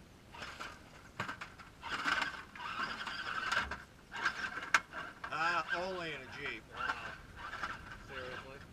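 Radio-controlled rock crawler's electric motor and gears whining in stop-start bursts as it climbs over granite, with a sharp knock of the chassis on rock near the middle.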